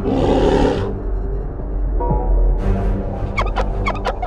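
Cartoon creature sound effects over a dark, droning horror score: a harsh hissing burst in the first second, then a quick run of high chirping squeaks, like a gobbling chitter, near the end.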